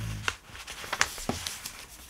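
A sheet of paper handled and laid down on a table: crackling rustles with a few sharp snaps, the loudest about a second in, after a soft thud at the start.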